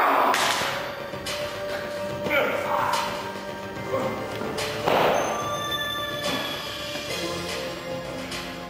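Sustained background music under a staged staff fight: several thuds and knocks of blows and stage falls, with loud vocal cries near the start, about 2.5 s in and about 5 s in.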